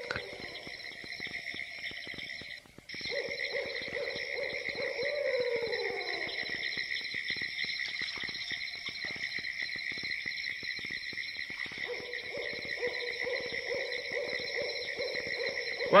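Animal calls with owl-like hoots, some falling in pitch, over a steady high-pitched chorus that cuts out briefly about three seconds in.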